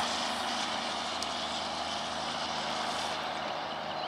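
Distant heavy truck engine working up a highway grade under load: a steady, even drone with a hiss.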